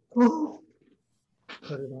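A man with cerebral palsy voicing a short, loud, strained word with falling pitch; his speech is slurred by the condition. A second man's ordinary speech follows from about a second and a half in.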